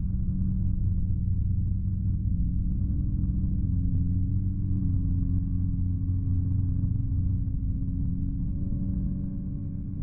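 A deep, steady low drone in the track: held bass tones under a rumble, with no vocals. It eases off slightly near the end.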